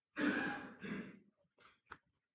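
A man's breathy sigh, a short exhale, followed by a second, weaker breath, then a single sharp click near the end.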